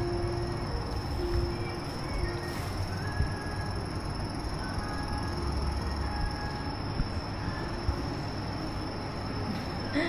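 Steady indoor café ambience: an even hum of room and fan noise with a thin high whine held throughout, faint notes of background music, and a few small clicks.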